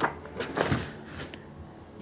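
Handling noises as hands move a book and plastic toy soldiers: a sharp knock right at the start, then a few lighter clicks and rustles in the first second, settling to a low background.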